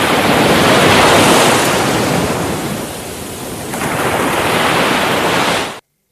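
Surging wave-like rush of a TV title sequence's sound effect, swelling, dipping about halfway, swelling again, then cutting off suddenly near the end.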